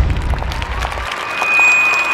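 Crowd clapping and cheering, under a deep rumble from the logo sting that stops about a second in. About halfway, a high steady whistling tone comes in and holds.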